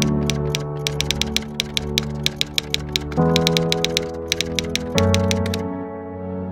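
Typewriter keystroke sound effect, a quick irregular run of clicks that stops near the end, over slow sustained music chords that change twice.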